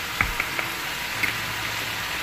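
Cabbage, carrots, bell pepper and celery sizzling in a hot wok as they stir-fry, a steady hiss with a few light clicks.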